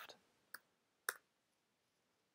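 Two short clicks of keys struck on a computer keyboard, about half a second apart, the second a little stronger, against near silence.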